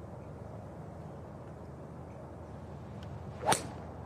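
Golf tee shot with a driver: a quick swish of the club and the sharp crack of the clubhead striking the ball off the tee, once, near the end, over a low steady outdoor background.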